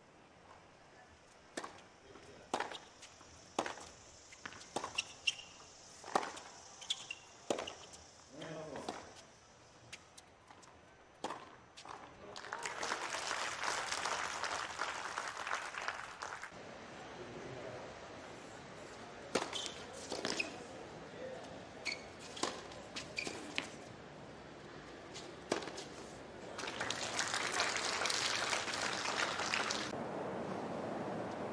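Tennis ball struck back and forth by rackets in a hard-court rally, a sharp pop every second or so. Then crowd applause and cheering for about four seconds. A second run of racket hits follows, and it also ends in applause.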